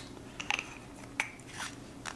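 A few light clicks and ticks, about four in two seconds, as a small UV resin bottle and its applicator tip are handled and drawn away from the fly in the vise.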